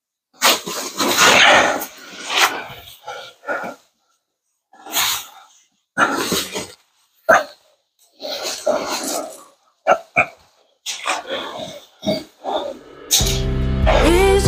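A man's heavy breathing and grunts, with his jacket and backpack rustling and scraping against rock, as he crawls ducked through a low, tight cave passage. The sound comes in short, irregular bursts. Music starts near the end.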